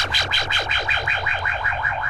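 Goa trance synthesizer zaps, each falling in pitch, repeating about five times a second over a steady low bass drone and held tones. The sweeps grow narrower towards the end.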